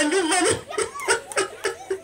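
A woman laughing: a drawn-out voiced laugh that breaks into short, quick bursts, about four a second.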